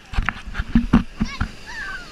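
Surf water slapping and splashing against the camera at the water line, a quick run of sharp slaps with low thumps in the first second and a half. Short high calls with gliding pitch come near the end.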